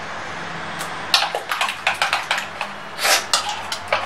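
Metal spoon stirring thick yogurt and spices in a plastic mixing bowl. It starts about a second in with a busy run of scrapes and clicks against the bowl's sides.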